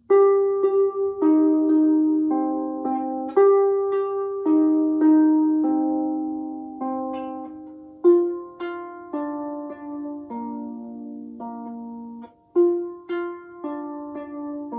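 Stoney End Ena double-strung lever harp being played: an improvised tune of plucked notes and chords, each note ringing and fading, with a short break about twelve seconds in.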